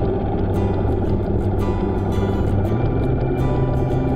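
Background music with held notes and light high percussion ticks, over a steady low rumble.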